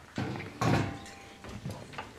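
Two dull knocks about half a second apart, the second louder, from a guitarist handling things on stage.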